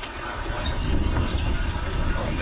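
A steady low rumble under an even outdoor hiss, with no distinct strokes or tones.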